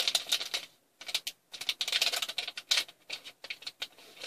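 Clear plastic bag holding a rubber wristband crinkling as it is handled: a run of quick crackles and rustles, with brief pauses about a second and a second and a half in.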